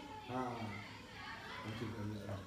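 Quiet speech: two short stretches of soft talking, with no other sound standing out.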